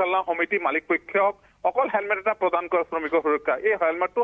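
Continuous speech over a telephone line, sounding thin and narrow.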